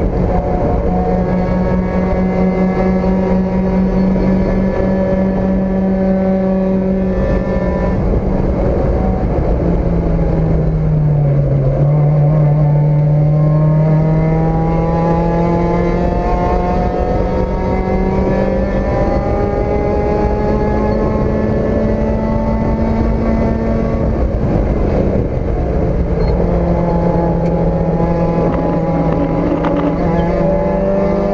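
Four-cylinder race car engine heard from inside the cockpit at racing speed. It holds high revs, dips about a third of the way in, climbs slowly for some ten seconds, drops again, and rises near the end.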